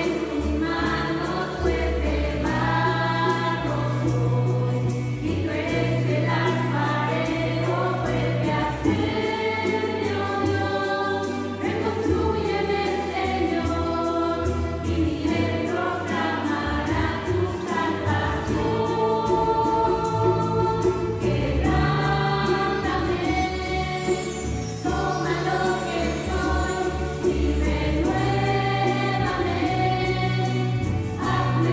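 Church choir singing a slow Spanish-language worship song over electric bass and hand percussion, with sustained low bass notes. About 23 seconds in, a high shimmering run on bar chimes.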